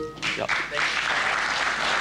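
Studio audience applauding, starting about half a second in and going on steadily, in approval of a correct answer.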